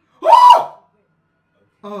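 A man's short, loud, high-pitched yelp of surprise, rising then falling in pitch, followed near the end by a spoken "oh".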